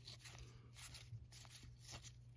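Near silence: faint soft clicks and rustle of trading cards being slid apart and fanned in the hands, over a low steady hum.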